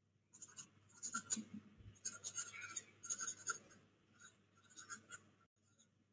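Faint pen or pencil writing on paper: irregular scratchy strokes in short runs, pausing near the end, over a faint steady low hum.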